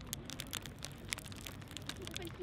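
Crackling and crunching of someone eating a crusty baguette sandwich held in a paper wrapper: the crust breaking and the paper crinkling in a quick, irregular run of sharp little crackles.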